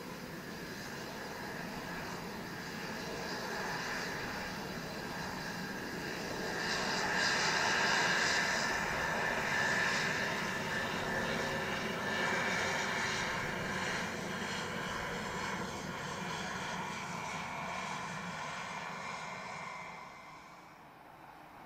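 Twin Pratt & Whitney PT6A turboprops of a Beechcraft King Air 350 running at taxi power as the aircraft rolls past: a steady whine with many held tones over propeller noise. It grows louder to a peak about seven seconds in, then slowly fades.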